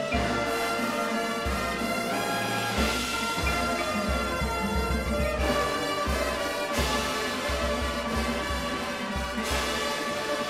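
Drum and bugle corps performing its field show: the brass line plays held chords that shift a few times, over a steady low drum pulse and front-ensemble percussion.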